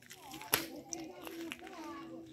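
Faint voices of people talking some way off, with a single sharp click about half a second in.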